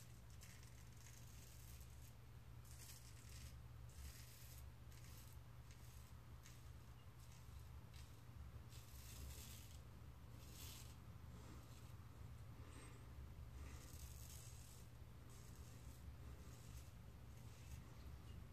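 Blackbird double-edge safety razor scraping through stubble on the neck in a run of faint, short, irregular strokes, over a low steady hum.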